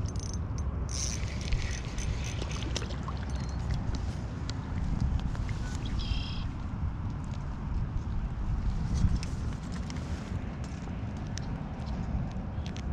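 A fishing reel is cranked as a hooked largemouth bass is brought in and lifted from the water by hand, giving scattered small clicks and handling noises over a steady low rumble. A brief high chirp comes about six seconds in.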